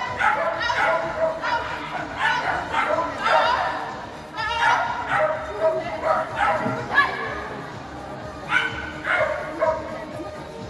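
Small dog barking in repeated high yaps as it runs, mixed with voices.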